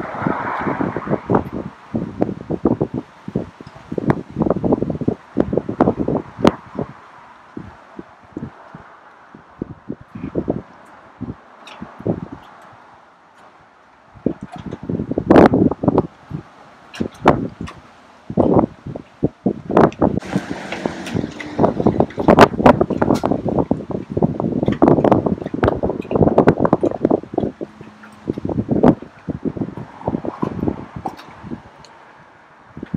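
Gusty wind buffeting the microphone in irregular rumbles, with scattered knocks and handling bumps. There is a quieter lull a little before halfway.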